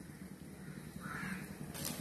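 Quiet background with one faint, short bird call about a second in.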